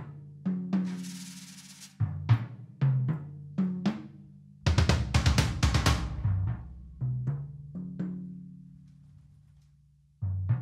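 Tuned drum-kit toms struck with a soft mallet, each note ringing with a low pitched sustain and decaying, demonstrating open and muted tones. About halfway through comes a quick flurry of strikes, then a few spaced notes ring out and fade.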